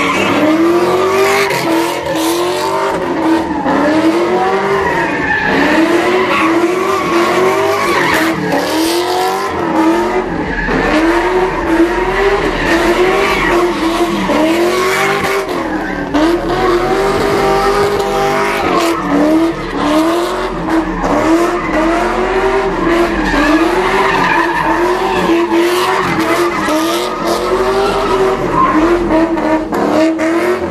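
Ford Mustang doing donuts, its engine revving up and down over and over, roughly once a second, with the rear tyres spinning and skidding on the asphalt.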